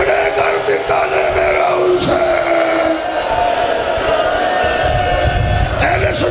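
Men's voices in a long, drawn-out wailing lament over a microphone system, with a crowd of mourners crying along.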